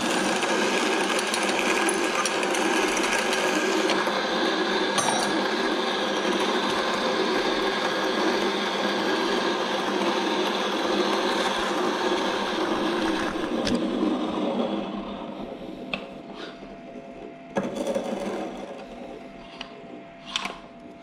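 Wug2-83A coffee grinder running steadily with an even motor whine for about thirteen seconds, then winding down and stopping. It is followed by a few light clicks and knocks of handling near the end.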